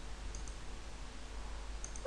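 Faint computer mouse clicks: one about a third of a second in and two close together near the end, over a low steady hum.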